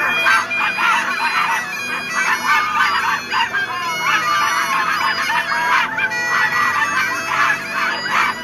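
A group of people imitating dogs, many voices overlapping in high yips, yelps and whines, some sliding in pitch.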